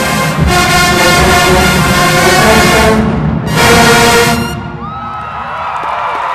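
A large HBCU marching band's brass and drums playing loudly. It breaks off briefly about three seconds in, then hits a final loud chord that cuts off about a second later. Crowd cheering and whoops follow.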